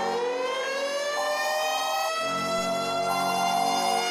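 Siren winding up: a slow rising wail that levels off into a steady held tone, with notes sounding on and off about once a second beneath it.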